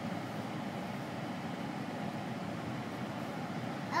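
Steady low running noise inside the cabin of a Rolls-Royce Ghost moving slowly under light throttle.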